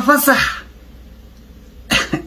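A man speaking. His words end about half a second in with a breathy sound, a quiet pause of over a second follows, and a short sharp vocal burst comes near the end as he starts again.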